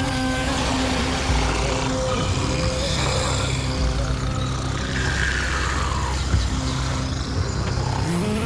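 Sleeping bus passengers snoring over the steady drone of the bus engine.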